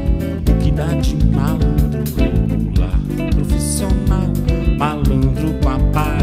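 Live band playing a samba on acoustic guitar, electric guitar, bass guitar and drums, with a steady stream of drum and percussion hits.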